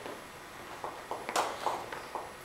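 Plastic ball-and-stick molecular model pieces clicking as atoms are pushed back onto their bonds: a few short, sharp clicks and taps in the second half, one louder than the rest.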